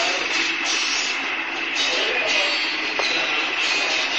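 A steady, hissy din from the street with faint, distant voices in it and a light tick about three seconds in.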